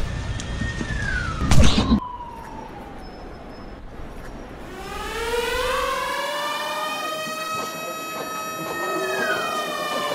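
An emergency-vehicle siren wailing in long rising and falling sweeps, with a loud thump about a second and a half in.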